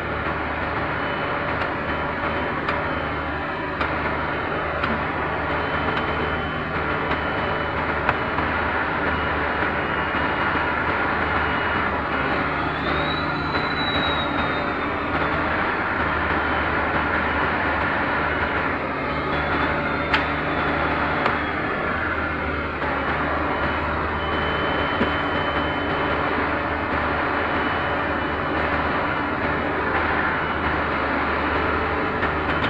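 Heavy rotator tow truck's diesel engine running steadily to power the boom and winch as it lifts a car, its low hum shifting every few seconds.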